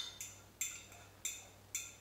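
A metal spoon scraping egg batter out of an upturned ceramic bowl into a wider dish: about four short scrapes, roughly half a second apart.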